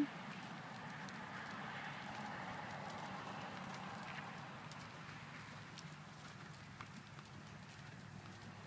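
Faint, soft hoofbeats of a Thoroughbred horse trotting on an arena's sand footing, a few light thuds standing out over a steady low background noise.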